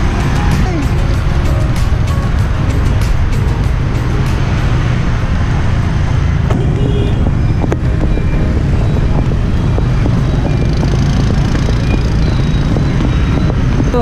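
Steady motorbike traffic on a city street, heard through a heavy, loud wind rumble on a moving camera's microphone, with a few brief high tones from the traffic.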